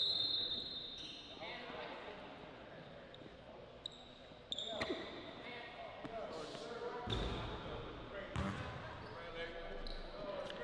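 Basketball bouncing on a hardwood gym floor during a one-on-one game, with a few separate knocks and thuds and faint voices in the background.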